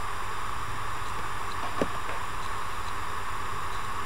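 Steady background hiss of the recording with a low hum beneath it, and one faint click nearly two seconds in.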